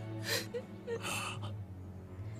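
A woman sobbing, with two short gasping breaths in the first second, over soft background music with sustained tones.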